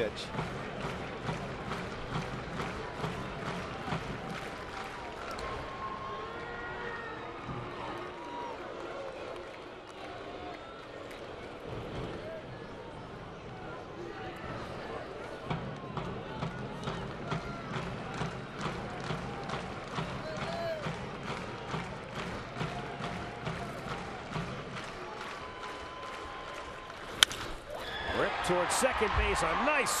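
Ballpark crowd murmuring with scattered voices and clapping. About 27 seconds in, a single sharp crack of the bat on a pitch, and the crowd noise swells as the ball is hit.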